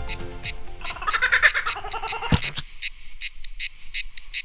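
Background music ends about a second in, giving way to a laughing kookaburra's call and steady insect chirping at about five chirps a second. A single short thump comes just past the middle.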